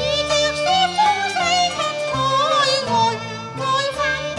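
A woman singing a Cantonese opera song into a microphone, her voice sliding between notes with vibrato and ornamentation, over a traditional Chinese instrumental accompaniment.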